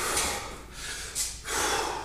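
A man taking deep, hard breaths between heavy barbell squat sets, recovering from the effort: one loud breath at the start and another near the end.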